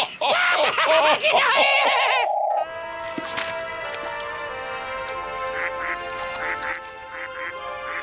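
A cartoon character's cackling laughter for about two seconds, ending in a short buzzing note. Then, after a sudden cut, gentle background music with a soft, regular pulse.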